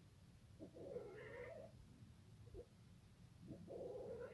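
Persian cats mating, with a cat giving faint, low drawn-out yowls: one about half a second in lasting about a second, and another starting near the end.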